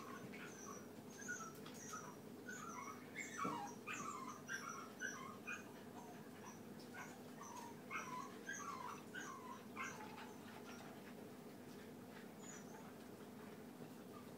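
Cocker spaniel puppies whimpering in short, high squeaks while they eat, the squeaks coming thickly for about the first ten seconds and then dying away. Faint small clicks of eating from metal bowls sound beneath them.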